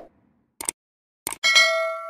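Subscribe-button animation sound effect: two short clicks, then a bell ding about a second and a half in that rings on and fades.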